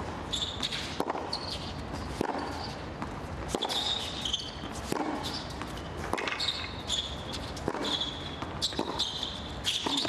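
A tennis rally on a hard court: the ball is struck by racquets and bounces about every second and a half. The players' shoes squeak on the court in between.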